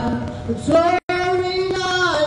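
A young female voice singing a worship song into a microphone, amplified through a portable PA speaker, sliding up onto long held notes. The sound cuts out completely for an instant about halfway through.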